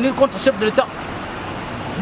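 A voice speaking briefly, then about a second of steady rushing background noise.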